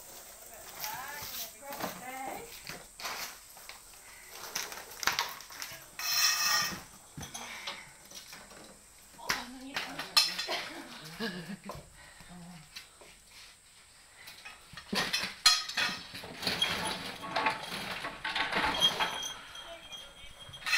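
Excited human voices and laughter with scattered clicks and knocks from handling gear, including one long high-pitched cry about six seconds in.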